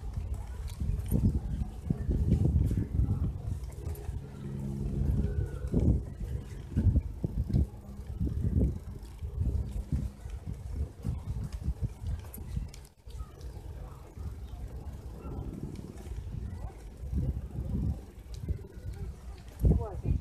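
Low, uneven rumble of wind buffeting the phone microphone while a bicycle is ridden along a paved path, rising and falling in gusts.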